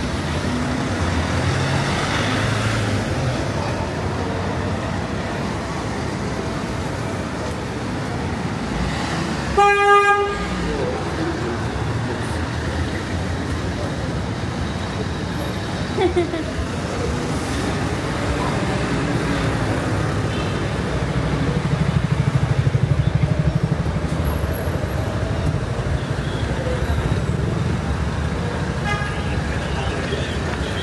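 City street ambience of passing car traffic and passers-by's voices, with a car horn giving a short double toot about ten seconds in. Later a vehicle passes closer, its engine rumble swelling for a few seconds.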